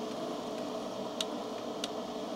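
Microfilm reader-printer humming steadily from its fan and lamp, with a couple of light clicks as the film carrier is moved.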